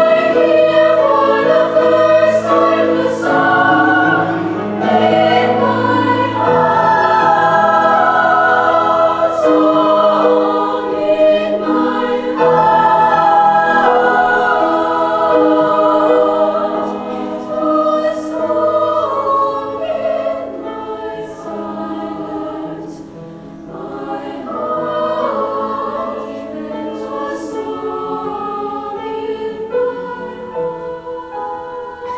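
High school girls' choir singing in parts with piano accompaniment, the voices held on long sung notes. The singing is full for the first half and grows softer about halfway through.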